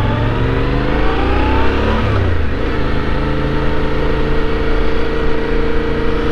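Yamaha Ténéré 700's parallel-twin engine pulling up through the revs under acceleration. About two seconds in the pitch drops at an upshift, then the engine runs steadily at a constant cruising speed.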